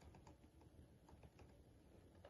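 Faint, irregular clicks of keys being typed on a Huawei laptop keyboard.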